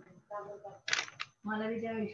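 A person speaking, with words the recogniser did not catch.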